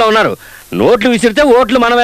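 A voice speaking in quick phrases, with a brief pause about half a second in.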